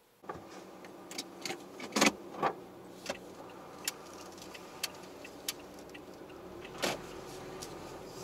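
Inside a slowly moving car: a steady low running hum sets in suddenly just after the start, with a run of sharp clicks and knocks over it, the loudest about two seconds in and another near the end.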